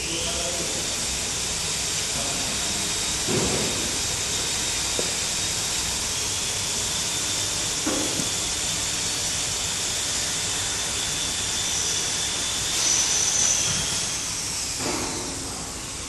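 Steady high hiss with a faint high whine from a running bottle labeling machine, starting suddenly and fading out near the end. A few soft knocks from plastic vials being handled.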